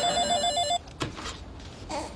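Phone ringing with an electronic ring, a rapid warble between two tones that stops after less than a second, followed by a click about a second in.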